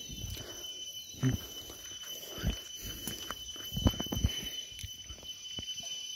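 A few soft thumps and rustles from a plastic jar of water and live fish being handled at the pond's edge, over a steady high-pitched insect drone.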